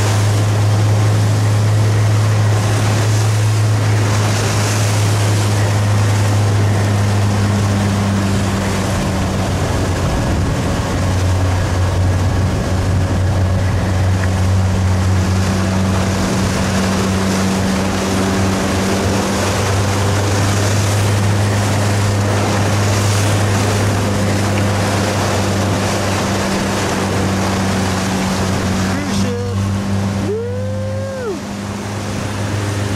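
Motorboat engine running steadily at speed, a low drone, with wind and splashing chop across the hull and microphone.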